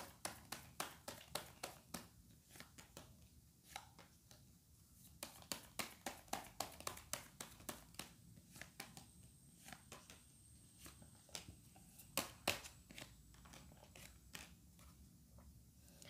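Tarot cards being handled and laid out on a wooden tabletop: a long run of faint, crisp card clicks and taps, some in quick strings.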